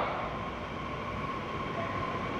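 Steady background noise of a hall heard through a microphone, with a faint steady high whine.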